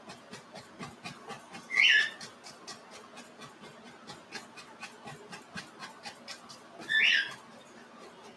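A bristle brush dabbing repeatedly against a stretched canvas in a quick run of soft taps, laying on tree foliage in oil paint. Twice, about five seconds apart, a short, louder high-pitched chirp cuts in.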